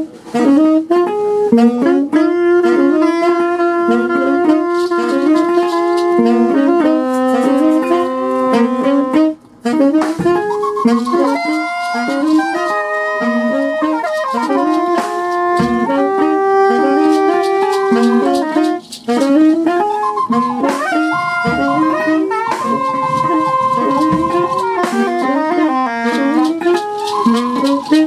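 Live free-improvised jazz by several saxophones, tenor and soprano among them, playing overlapping lines: quick repeated figures low down against long held higher notes, with scattered percussive clicks.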